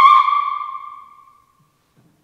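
An operatic soprano's high, held note breaks off just after the start. Its ring then fades away over about a second, followed by a silent pause.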